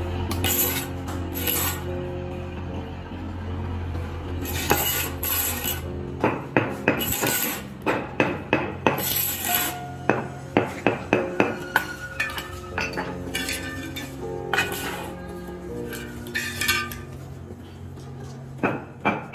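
Background music over hard stony clinks as pebbles are handled and set into mortar. About six seconds in, a run of sharp taps begins, two or three a second, as a floor tile is tapped down with a hammer to bed it, with more taps near the end.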